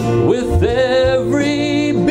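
A man singing into a microphone over instrumental accompaniment, holding two long notes with a wavering vibrato.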